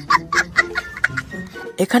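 A young child laughing hard in quick, high-pitched bursts, about four or five a second, over background music; the bursts thin out in the second half.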